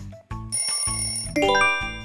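A background music beat stops, and about half a second in a bell rings, the time's-up cue of a quiz countdown, followed near the end by a quick rising run of chime notes.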